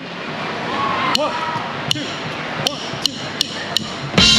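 Drumsticks clicked together six times to count the band in, the first three evenly spaced and the last three twice as fast, over the murmur of a crowd in a large hall.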